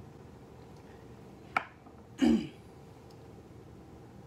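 A sharp click, then about two-thirds of a second later a short vocal sound from a person, brief and falling in pitch, like a throat clear, over a low steady room hum.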